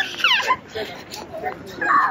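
A young child's high-pitched excited squeal right at the start, sliding in pitch, followed by more short childish cries and chatter, with another loud cry near the end.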